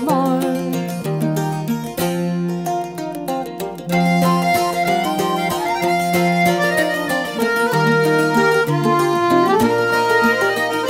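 Instrumental break of an Irish traditional ballad: fiddle melody over plucked-string accompaniment. The band plays fuller and louder from about four seconds in.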